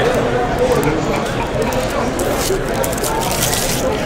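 Crinkling and crackling of a trading card pack's foil wrapper being handled, sharpest about two and a half seconds in, over low voices talking in the room.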